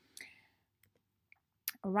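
A near-quiet pause in a talk: a faint short noise, a few small clicks with one sharper click just before the end, then a woman starts speaking.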